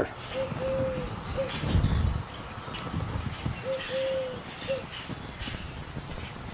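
A dove cooing twice, each call three low notes, short, long, short, about three seconds apart, over a low rumble of wind on the microphone.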